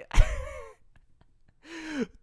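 A man's short, breathy exhale close to the microphone, lasting about half a second. The voiced start of a word follows near the end.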